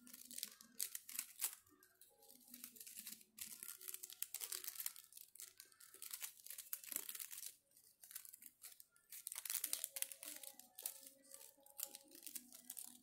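Fringed strip of double-sided paper rustling and crinkling in the hands as it is rolled up into a tight coil, in short, irregular bursts.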